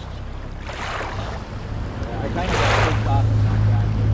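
Aluminium fishing boat's motor running, its low hum growing louder about halfway through as the boat picks up speed, with gusts of wind rushing over the microphone.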